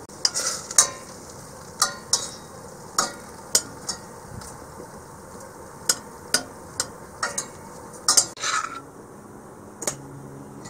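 A metal spoon stirring frying vegetables in a cast-iron pot and then a stainless steel pot, scraping and clinking against the pot sides in about a dozen irregular sharp knocks, over a steady sizzle.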